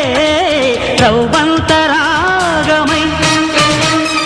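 Telugu film song: a singer holds long notes and bends them in ornamented turns over a band with a steady drum beat.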